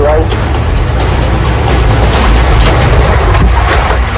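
Police pursuit car driven hard at speed, heard from inside the car: a loud, steady engine and road rumble.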